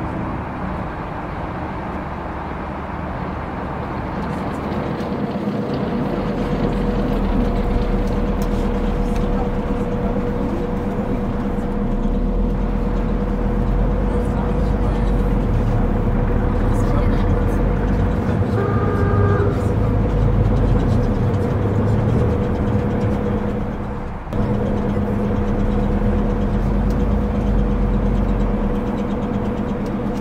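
Added street-traffic ambience: a vehicle engine running steadily under a continuous wash of road noise, with a low rumble building after the first few seconds. A brief higher tone sounds about two-thirds of the way in.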